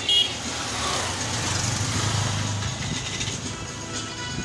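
Road traffic: a motor vehicle's engine passing close, swelling to its loudest around two seconds in and then easing off, with a brief high beep right at the start.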